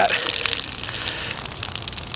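Water trickling steadily in a thin stream out of a cheap plastic food container onto leaf litter. The container has filled with water that leaked in.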